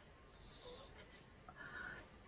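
Near silence: room tone with a couple of faint, brief sounds.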